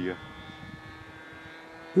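Distant model airplane's 10 cc petrol engine running at a steady pitch overhead, heard as a faint, even buzz.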